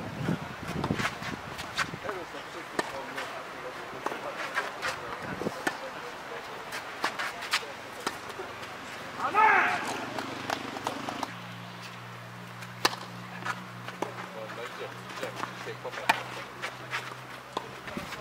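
Tennis balls struck by rackets in a rally on a clay court, sharp pops a second or more apart, over background voices. A loud shout comes about nine seconds in, and a low steady hum starts soon after.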